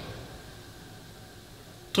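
A pause between spoken sentences: the last word's echo in the room fades out, leaving only faint, steady background noise.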